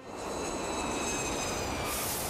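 Jet airliner engines: a steady rush of engine noise with a high whine that falls slowly in pitch as the plane moves away.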